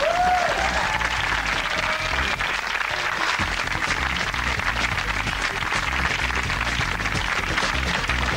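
Studio audience applauding over the show's closing theme music, which has a pulsing bass line.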